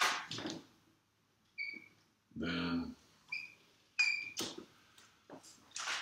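Dry-erase marker squeaking and scraping against a whiteboard in several short strokes as curly brackets are drawn. A short low hum of a voice comes a little before the middle.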